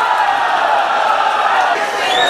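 Football stadium crowd, many voices shouting together in a steady, loud mass.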